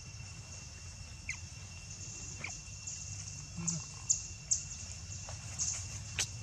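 Steady insect drone in forest undergrowth, a thin high whine over a hiss, with about half a dozen short, high squeaks and chirps scattered through.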